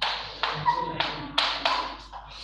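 Chalk striking and scraping across a blackboard as a word is written: about five short strokes, each starting with a sharp tap and trailing off.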